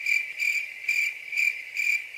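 Cricket chirping: a high, steady trill pulsing in short regular chirps a few times a second.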